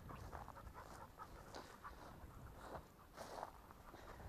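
Faint panting of a hunting dog close by.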